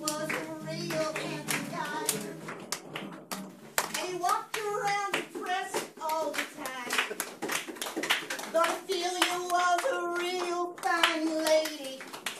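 A group singing a song with hand claps throughout, the singers holding long notes in the second half.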